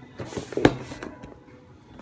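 Plastic snap-lock food container being unlatched and its lid opened: handling noise with one sharp plastic click a little over half a second in.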